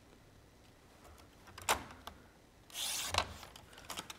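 Cream cardstock being cut on a sliding-blade paper trimmer: a light click about a second and a half in, then a short rasping rush of noise a little before the three-second mark as the blade runs through the card.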